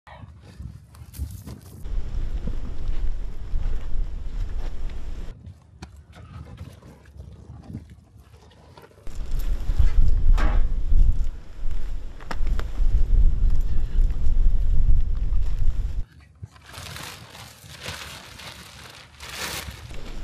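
Wind buffeting the microphone in long stretches of heavy low rumble that start and stop abruptly, with rustling of camouflage netting and dry brush and scattered footsteps and clicks.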